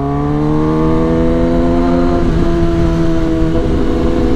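Kawasaki ZX-10R inline-four engine pulling under way, its pitch rising slowly for about two seconds, then a brief break in the tone and a steadier note.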